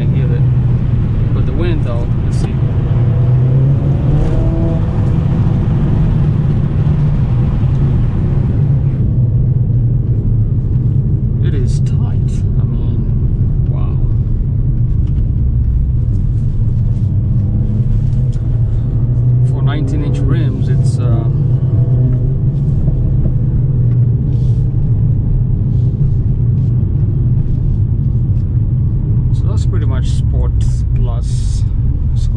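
Steady low drone inside the cabin of a moving 2020 Mercedes-AMG CLA 45: its 2.0-litre turbocharged inline-four and road noise. A broad hiss over it cuts off suddenly about nine seconds in.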